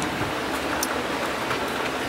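Steady outdoor background noise, an even hiss with a few faint clicks.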